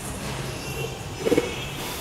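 Steady low background hum with no speech, and a brief faint pitched sound a little over a second in.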